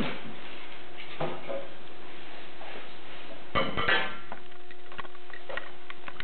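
Packaging being handled as a guitar is unwrapped from its box: scattered rustles and knocks, with a louder crackling burst about three and a half seconds in. A faint steady hum runs underneath.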